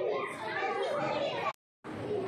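Children's voices and chatter in a classroom, breaking off into a moment of dead silence near the end before resuming.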